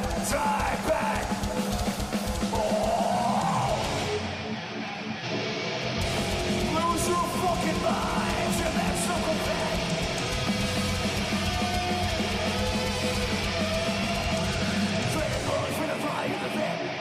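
Live thrash metal band playing: distorted electric guitars, bass and drums, heard through a loud PA. The low drum hits drop out briefly about four seconds in and the full band comes back in about two seconds later.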